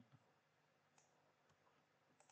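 Near silence with a few faint, short clicks of a computer mouse and keyboard.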